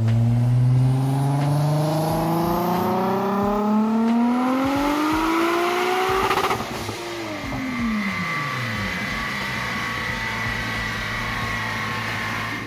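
Turbocharged VR6 engine of a Volkswagen Golf IV R32 in a full-throttle dyno pull: the engine note climbs steadily for about six seconds, cuts off sharply as the throttle closes, falls away, and settles to idle with a faint high whine.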